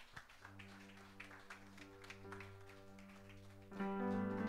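Soft worship keyboard holding a sustained chord, getting louder and fuller just before the end as new notes come in. Faint scattered clicks sound behind it.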